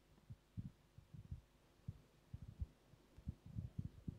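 Faint, irregular low thumps and bumps: handling and movement noise as the speaker gathers his papers and steps away from the lectern.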